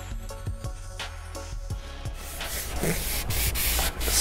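Foam block applicator rubbed back and forth over perforated leather upholstery, spreading a leather coating: a scratchy rubbing that starts about halfway through and grows louder, over background music.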